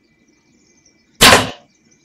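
A bow shot: one sharp, loud crack about a second in as the arrow is loosed and strikes a baboon in the side, fading quickly.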